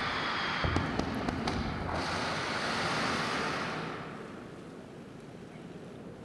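Ballistic missile launching from a silo: a steady rushing blast of rocket noise with a few sharp crackles in the first second and a half, dying away about four seconds in.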